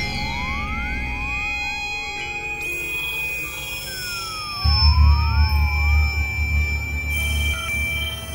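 Experimental synthesizer music driven by Max/MSP: a held high tone with repeated short pitch sweeps up and down, like a siren. A loud low drone comes in about halfway through and runs on to near the end.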